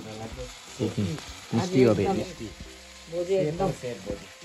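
Green beans sizzling as they fry in a wok over a wood fire, a steady hiss with three short stretches of talk over it.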